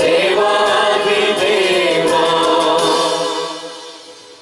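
A mixed youth choir of boys and girls singing a hymn together through microphones, the singing dying away about three seconds in as the song ends.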